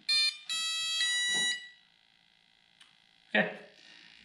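Electronic speed controller of an electric RC plane sounding its power-up tones through the brushless motor as the flight battery is connected: a short high beep, then a longer, lower beep of about a second. The long beep confirms the throttle is at zero and the speed controller is armed.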